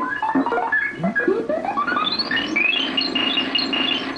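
Electronic synthesizer music playing from the 2-XL toy robot's tape through its small speaker: a run of notes climbing step by step in pitch, ending on a high held note near the end.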